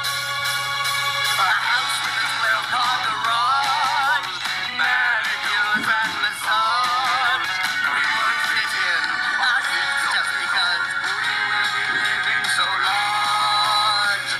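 A song: a high singing voice with a wavering, vibrato-laden melody over a musical backing, with no words made out.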